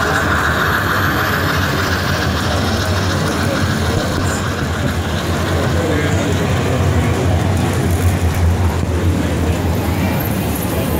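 Bachmann On30 model trains running on the layout amid the steady din of an exhibition hall: a low hum and a rushing noise, with a brighter hiss that fades over the first couple of seconds.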